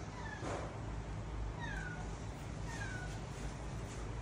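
Three short, high-pitched animal cries, each falling in pitch, about a second apart, over a steady low hum.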